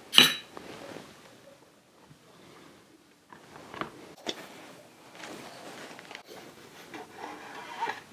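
A metal screwdriver set into a stainless steel magnetic parts bowl with a sharp, ringing clink just after the start. Quieter handling follows: a few light clicks and rubbing as the transceiver's sheet-metal top cover is taken hold of and lifted off.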